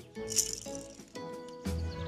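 A toy baby rattle shaken briefly, about half a second in, over light background music.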